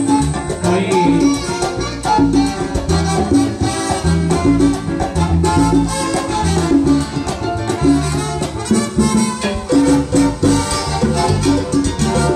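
Live salsa orchestra playing a passage with no lead vocal: a steady bass line under congas, timbales and a brass section.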